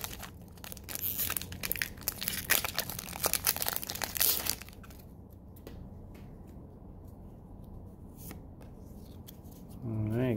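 Foil booster pack wrapper being torn open and crinkling for about four seconds, then quieter with a few light ticks.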